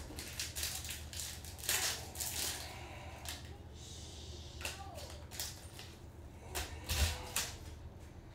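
Stiff chrome baseball trading cards handled by gloved hands: quick irregular slides, flicks and slaps of card against card as they are sorted and dropped onto a stack. The loudest clatters come about two seconds in and near the end.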